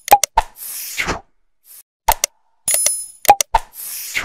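Animated like-and-subscribe sound effects: quick pops and clicks with bright dings, and a short swish about half a second in and another near the end, in a pattern that repeats about every three seconds.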